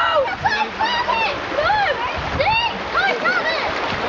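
Several children shouting and calling excitedly over one another, short overlapping cries, over the steady rush of a shallow river running over stones.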